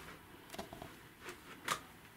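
A few faint, sharp clicks over quiet room noise, the sharpest near the end.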